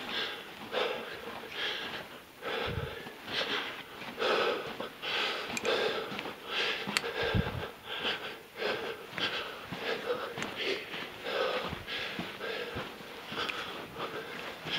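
A man breathing hard and rapidly, about a breath a second, from the effort of moving crouched with a backpack through a low lava-tube passage. Two dull thumps come about 3 and 7 seconds in.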